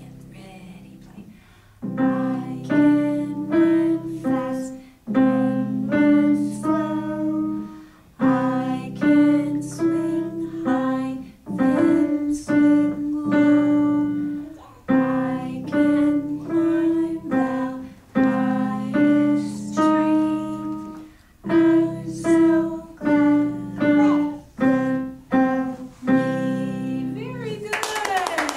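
Digital piano played by a beginner: a simple tune in short phrases of a few notes, with held low notes under the melody and brief pauses between phrases.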